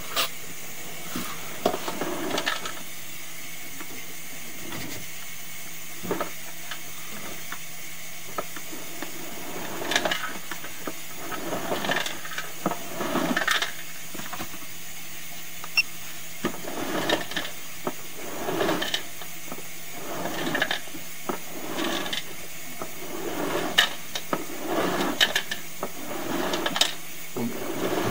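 Irregular clicks, knocks and short scraping rasps as a sewer inspection camera and its push cable are pulled back through a kitchen drain line, over a steady hiss and faint hum.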